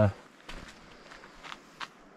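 A few faint footsteps on sandstone rock scattered with dry leaves and twigs, soft separate steps.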